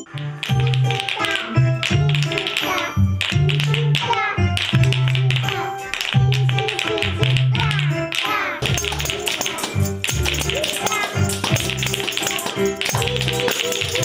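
Children clacking painted wooden spoons and shaking tambourines in rhythm along to a song with a steady bass line and singing.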